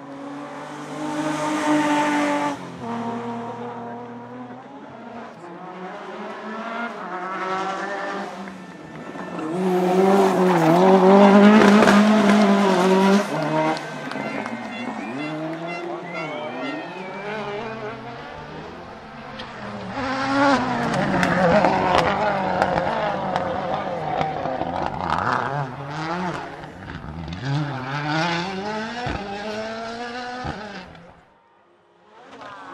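Rally cars passing one after another at speed, each engine revving hard and falling away through gear changes, the loudest pass about ten to thirteen seconds in. Among them a classic BMW 3 Series (E21) rally car early on and a Ford Fiesta WRC near the end.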